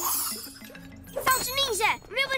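Cartoon sound effect of a thrown magic power staff: a bright, shimmering whoosh that falls in pitch at the start. About a second in come a character's short vocal cries, over background music.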